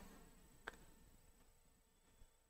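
Near silence: room tone, with one faint click about two-thirds of a second in.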